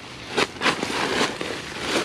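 Tent fabric rustling and crinkling in several short bursts as a window flap is handled and pulled down over the mesh.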